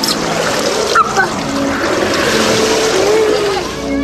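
Water splashing and sloshing at the edge of a swimming pool, a steady noise with a couple of small clicks about a second in, and a faint voice over it.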